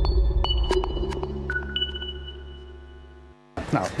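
TV channel logo ident jingle: a few high electronic pings ringing over a deep bass hum, fading away over about three seconds. After a brief gap, street noise and a man's voice start near the end.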